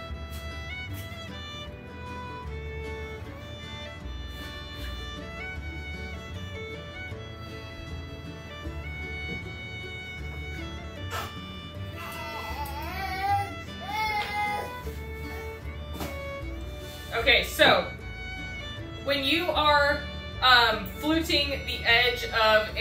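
Instrumental background music led by a fiddle, running steadily. A voice is heard briefly a little past the middle and again near the end.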